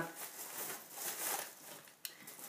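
Faint rustling of a thin plastic shopping bag being handled.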